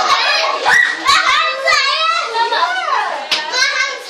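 Children's high-pitched voices calling out and chattering over one another, with pitch swooping up and down.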